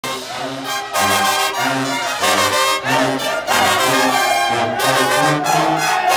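Bolivian brass band playing while marching: trumpets and trombones over deep tuba bass notes, with bass drums, snare drums and repeated crash-cymbal hits.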